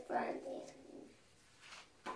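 A young child's voice drawing out a wordless, coo-like sound for about a second, as when sounding out a word while reading aloud. It is followed by a faint rustle of paper near the end as a book page is turned.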